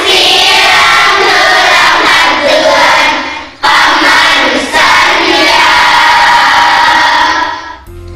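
A large group of children's voices loud in unison, in two long phrases split by a brief break about three and a half seconds in; the second phrase ends on a long held note.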